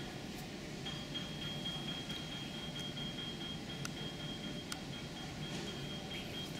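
Indoor room tone: a steady low background hum, with a faint, thin, steady high-pitched tone joining about a second in.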